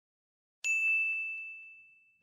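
A single bright chime sound effect, a 'ding' about half a second in, ringing on one clear pitch and fading away over about a second and a half.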